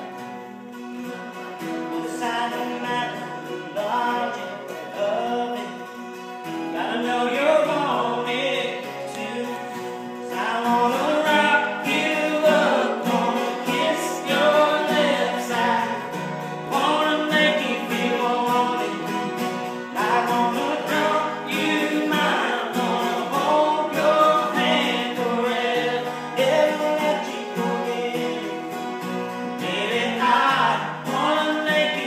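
Live acoustic guitars playing a song, with voices singing over them.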